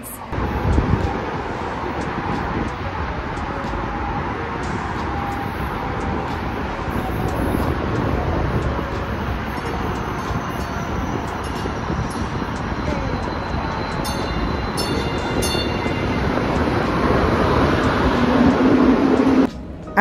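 St. Louis MetroLink light-rail train pulling into the station: steady rail and motor noise that grows a little louder near the end.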